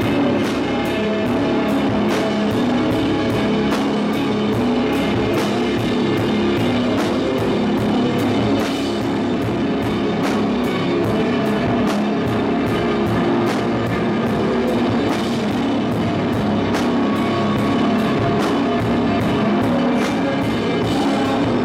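Shoegaze rock band playing live and loud: a dense wash of electric guitar and bass over a steady drum-kit beat with regular, evenly spaced hits.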